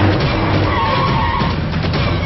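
Film car-chase soundtrack: speeding vehicles with tyre screeching, mixed over background music. A few short sharp knocks near the end.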